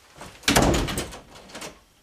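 A door being shut and locked: a loud thump about half a second in, then a few lighter clicks of the lock.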